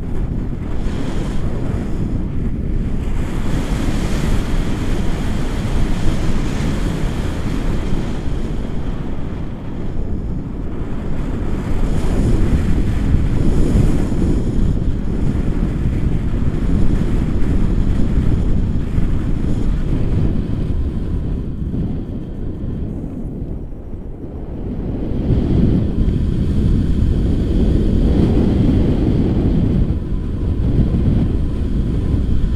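Airflow of a tandem paraglider in flight rushing over the camera's microphone: loud, steady wind noise that swells and eases, dipping briefly around ten seconds in and again near 24 seconds.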